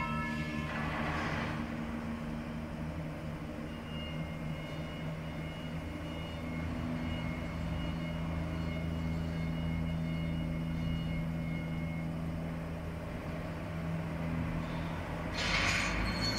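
Stainless-steel bubble washing machine running: a steady low motor hum. Short hissing bursts come about a second in and again near the end.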